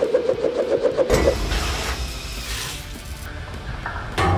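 A low rumble with hiss comes in about a second in and fades away over the next two seconds: a spinning LEGO disc weapon cutting into a wet sand dam. Music plays under the start.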